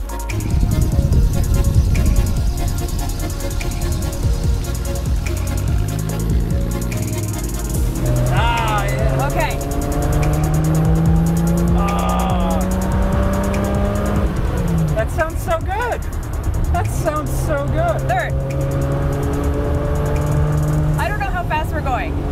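Triumph GT6+ straight-six engine heard from inside the cabin, pulling the car away with its pitch climbing steadily, dropping at a gear change about two-thirds of the way through, then climbing again.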